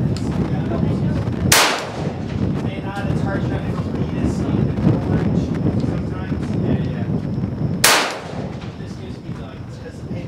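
Two rifle shots about six seconds apart, each a sharp crack with a short echo: an AR-15 firing .223 rounds. Steady low wind rumble on the microphone runs underneath.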